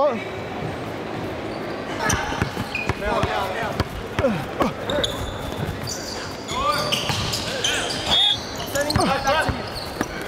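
A basketball being dribbled and bouncing on a hardwood gym floor during a game, with players' voices calling out across the hall.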